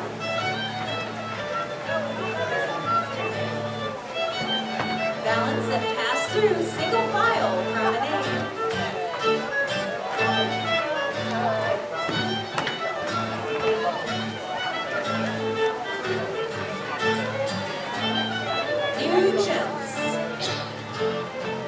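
Live contra dance tune played on fiddle with guitar accompaniment, a steady rhythmic reel-like beat with the fiddle carrying the melody.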